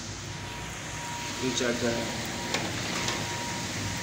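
Heavy rain pouring down, a dense steady hiss of rain on rooftops.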